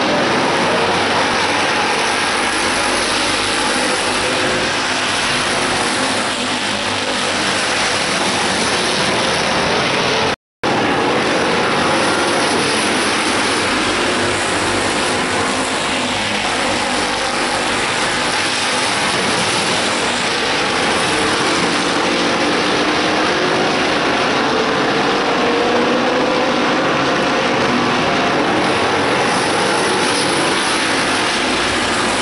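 Stock cars racing around a paved short oval, several engines running hard together in a steady, continuous din. The sound cuts out for an instant about a third of the way through.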